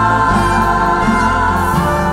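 A gospel church choir and a female lead singer singing with instrumental accompaniment, the lead holding a long note with vibrato.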